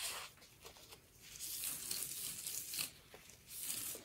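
Soft rustling and crinkling of a paper towel and the plastic sheeting under a wet watercolour board as the board's edge is blotted and the board is lifted, in a few faint swishes.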